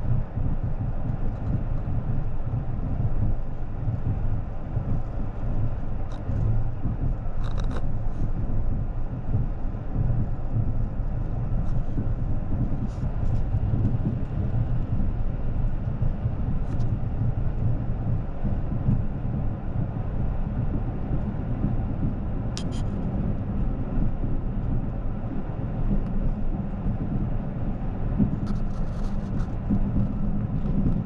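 Caledonian Sleeper Mk5 coach rolling slowly, heard from inside the cabin as a steady low rumble, with a few faint clicks.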